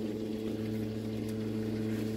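A steady low machine hum with several even overtones, holding one pitch without change.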